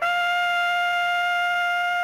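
A bugle sounding a call: one high note held steady throughout, following shorter lower notes.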